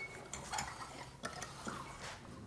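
A few faint, light clicks and handling noises from a recurve bow and a hand-held draw-weight scale being handled to test the bow's poundage.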